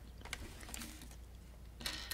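Small plastic LEGO pieces clicking faintly as they are handled and pressed together, with a few sharper clicks near the end.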